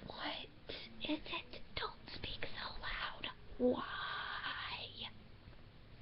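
Quiet whispering, then a drawn-out voice sound lasting over a second, starting about three and a half seconds in.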